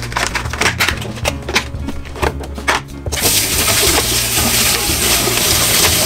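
A plastic clamshell berry container clicking and crackling as it is handled. About three seconds in, a kitchen tap turns on and water runs steadily over blueberries in a colander in a stainless steel sink.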